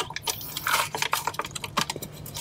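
Wet drips and small irregular clicks and scrapes as the opened plastic housing of a Whale Mark V marine toilet waste pump is handled and cleaned out over a bucket.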